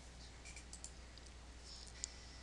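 Faint clicks of a computer mouse, a few light ticks about half a second in and again near the end, over a low steady hum.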